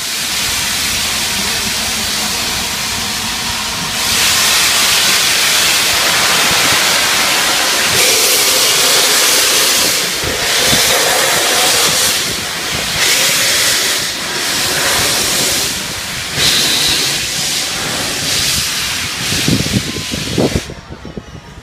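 LNER A3 Pacific steam locomotive Flying Scotsman hissing loudly as steam pours out around its front end, the hiss growing louder about four seconds in. From about halfway it surges unevenly as the engine moves off.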